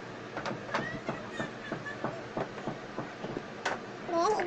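A run of light clicks and taps, about three a second and uneven, from makeup items being handled, with a louder click near the end.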